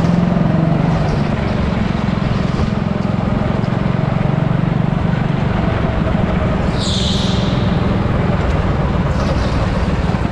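Rental go-kart engine running at speed, heard onboard, with a steady drone throughout. A brief high-pitched squeal comes about seven seconds in.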